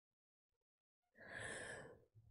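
A woman sighs once, a breathy exhale starting about a second in, out of being moved.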